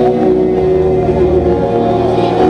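Live pop band music: keyboard and guitar playing sustained chords.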